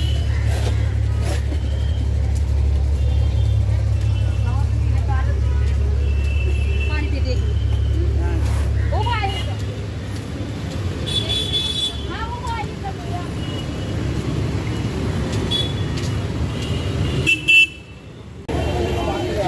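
Busy city street traffic: a bus engine rumbles close by for about the first nine seconds, with vehicle horns honking several times and voices of passers-by.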